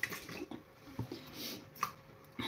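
Quiet handling at a kitchen counter: a few light clicks and taps from a plastic vegetable chopper and cut potato pieces being moved about.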